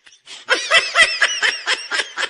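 High-pitched laughter in a quick run of short 'ha' pulses, about six a second, starting about half a second in.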